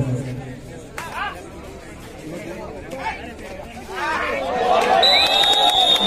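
Crowd of spectators and players shouting, scattered at first, then swelling into loud overlapping yelling about four seconds in as a kabaddi raider is tackled. A long, steady high whistle blast sounds near the end.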